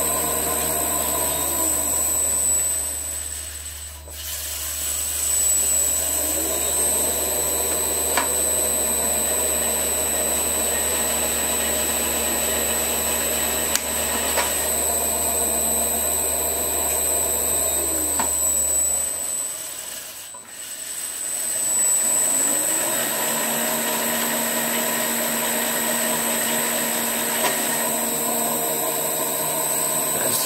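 Rivett 608 lathe running steadily while it cuts a tiny screw thread. Twice its pitch falls as it runs down to a near stop, then rises as it spins back up between passes. A few light clicks come from the toolholder.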